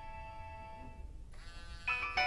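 Nokia mobile phone ringing with a musical ringtone for an incoming call: held electronic notes fade, a short gap with a rising glide about a second in, then a new phrase of bright notes starts near the end.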